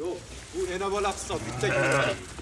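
Sheep bleating: one call about half a second in and another, lower-pitched call near the end.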